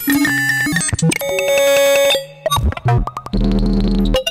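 Serge modular synthesizer playing a self-running patch: pitched synth voices step to new, random-sounding notes several times a second, their pitches set by a sample-and-hold fed by two cycling envelope generators running out of sync, with pinged Variable Q filter voices and FM'd oscillators run through a ring modulator, wave multipliers and frequency shifter. About three-quarters of the way through, a low buzzy sustained tone takes over.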